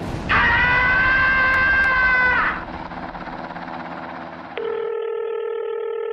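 An explosion's low rumble, with a man's high, held scream over it for about two seconds. About four and a half seconds in, a steady telephone tone starts.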